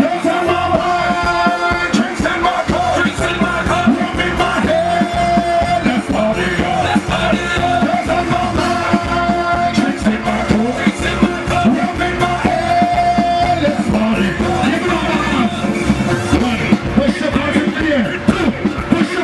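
Live soca music: a band playing a steady beat while a male vocalist sings into a microphone through the PA.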